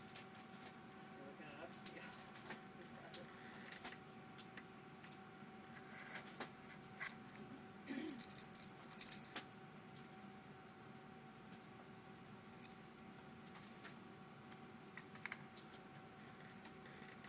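Shards of a shattered laptop hard-drive platter clinking and rattling inside the open drive as it is handled, in small scattered ticks with a louder flurry of clinks about halfway through.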